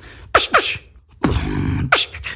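Beatboxing: a mouth-made beat built on the rhino snare. Two quick sharp hits come about a third of a second in, then a short gap, then a longer noisy snare sound held for over half a second with a low hum under it.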